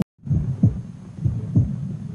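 Heartbeat sound effect: two low lub-dub beats, about once a second, over a steady low hum, starting after a brief dropout.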